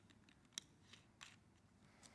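A water bottle's cap being screwed back on: a few faint small clicks over near silence.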